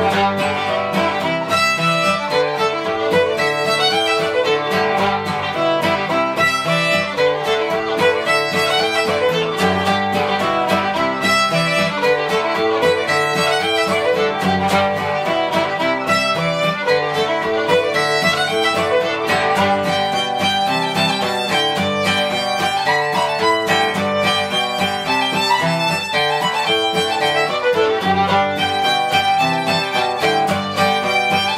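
An old-time fiddle tune played on fiddle, with a plucked banjo accompanying it throughout.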